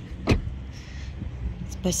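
A single sharp knock about a third of a second in, over a steady low rumble.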